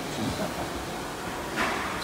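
Steady background noise of a factory hall, like air handling, with a short rush of noise about one and a half seconds in.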